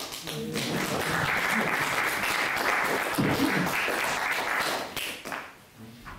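Audience applauding, starting suddenly and lasting about five seconds before dying away near the end, with a few voices mixed in.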